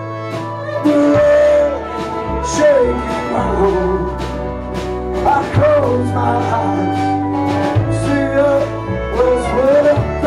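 Live country-folk band playing: guitar, upright double bass, pedal steel guitar, fiddle and drums. Sliding melody lines run over a steady bass and beat.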